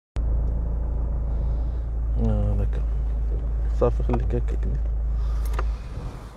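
Car engine idling, heard from inside the cabin as a steady low hum; it stops abruptly just before the end. A few short bursts of voice break in over it.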